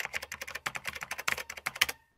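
Keyboard typing: a fast run of clicks, about ten a second, that stops just before the end.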